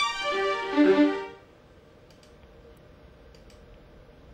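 Sampled violin from a string sound font, played by FL Studio's channel arpeggiator as a fast run of single notes through a held five-note chord. The run stops about a second and a half in, leaving a few faint clicks.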